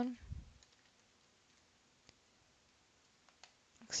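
Faint, scattered clicks from computer mouse and keyboard use over quiet room tone, with a soft low thump about half a second in.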